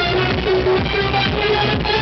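Electronic dance music from a live DJ set, played loud and continuously over a club sound system.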